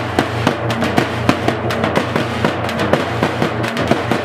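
A band of dappu frame drums beaten with sticks in a fast, running rhythm, with sharp, loud strokes several times a second.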